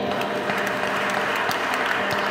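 A congregation applauding: many hands clapping at a steady level.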